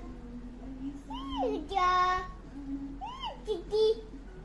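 A young child babbling to himself in a wordless sing-song voice, with drawn-out notes and two rising-then-falling swoops.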